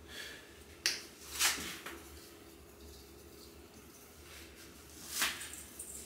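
Glass jar of dried basil being shaken over a bowl of chicken, giving a few short sharp clicks and taps: one about a second in, another half a second later and one more near the end.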